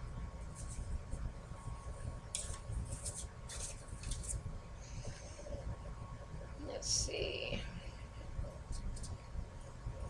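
Quiet handling of a wood-mounted rubber stamp and paper: a few brief rustles and scrapes, then a soft murmured sound about seven seconds in, over a low steady hum.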